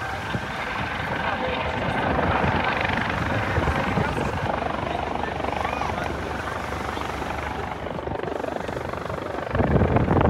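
US Coast Guard MH-65 Dolphin helicopter flying low over the water, a steady rotor and turbine noise that swells to its loudest about two to three seconds in.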